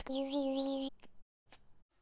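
A flat metal hand tool scraping along the edge of a wooden board for about a second, a scratchy sound with a steady tone under it, followed by a couple of short clicks.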